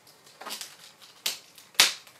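Clear plastic bag crinkling as it is pulled off a phone box, in three sharp crackles, the loudest near the end.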